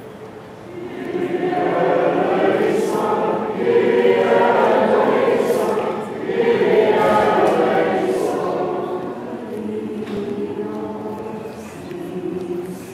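A choir and congregation singing a Greek Orthodox Holy Friday hymn in Byzantine chant. The singing swells about a second in and eases off near the end.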